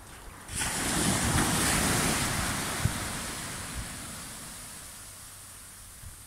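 Small sea wave breaking on a sandy shore and washing up the beach: a hiss that surges in suddenly about half a second in, then slowly dies away.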